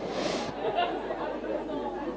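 Audience chatter: many voices talking at once in a large hall, with a brief hiss at the very start.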